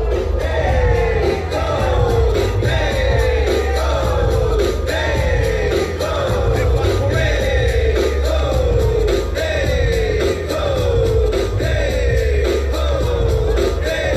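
Dance music with a steady heavy bass beat and a short falling melodic phrase that repeats about twice a second.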